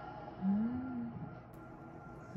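A person's closed-mouth "mmm" hum, one drawn-out note under a second long that rises slightly and then holds, about half a second in.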